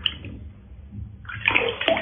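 Water sloshing quietly in a plastic tub, then a louder splash from about one and a half seconds in as a plastic scoop of water is poured over a cat's back.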